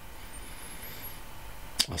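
A pause in a man's talk: low steady background hiss, then a sharp click near the end as he starts to speak again.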